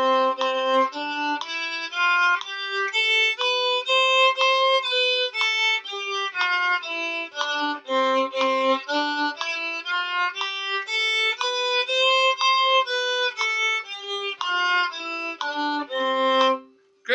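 Violin playing a one-octave C major scale up and down, starting from the C on the G string, in separate bow strokes on eighth notes at about two notes a second. A steady G drone sounds underneath.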